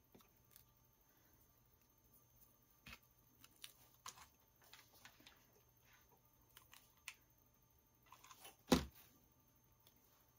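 Faint handling sounds of a twig branch and artificial flowers being worked by hand: scattered small clicks and rustles, with one louder knock near the end.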